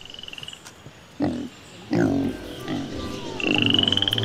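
Animal calls: a short, high pulsing trill, then a lower call with several stacked tones about two seconds in, and a rising high pulsing trill near the end.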